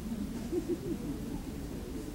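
A low, wordless human voice with a wavering pitch, strongest about half a second to a second in, heard over a low background hum.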